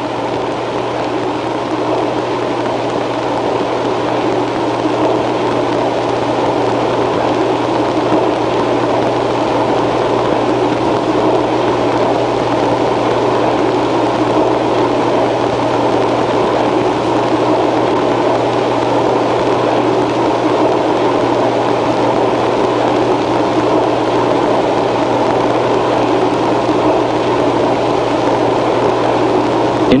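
Steady noise of a laboratory wave tank running, its wave-making machinery and moving water, with a steady low hum underneath.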